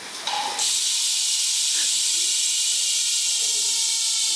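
Rear hub of a carbon road bike freewheeling as the lifted rear wheel spins: a steady high-pitched buzzing hiss that starts suddenly about half a second in.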